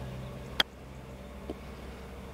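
A golf wedge striking a ball on a short pitch shot: one sharp click about half a second in, followed about a second later by a much fainter knock, over a steady low background hum.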